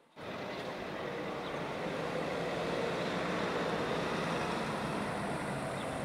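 Steady outdoor street ambience: an even wash of traffic noise that cuts in suddenly just after the start and holds at a constant level.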